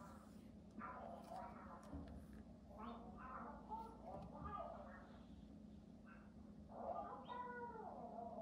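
Ducklings calling softly, a handful of short calls scattered through, with the longest one about seven seconds in.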